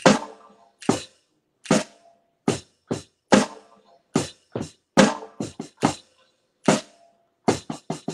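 Drums struck with wooden drumsticks in a slow, loose groove: sharp single hits at about two a second, unevenly spaced and some in quick pairs, a few with a short ringing tone, and near silence between strokes.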